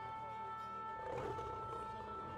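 Soft background music with long held notes, and a loud, rough, guttural human cry about a second in.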